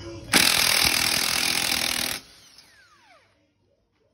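Milwaukee cordless impact wrench running on a wheel lug nut for about two seconds to loosen it. It is loud while running, then the motor winds down with a falling whine.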